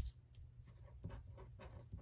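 A pen writing a word on a sheet of paper: faint, short scratching strokes.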